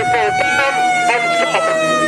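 Air raid siren wailing, its pitch climbing slowly to a peak and then starting to fall again, with voices over it.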